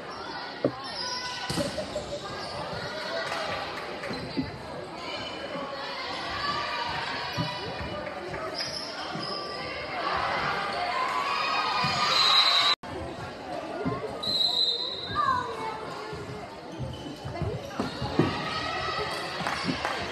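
Volleyball being hit and bouncing in a gym, sharp echoing thuds over the steady chatter of spectators and players' calls. The crowd noise swells to cheering about ten seconds in, and the sound cuts out for an instant near the thirteenth second.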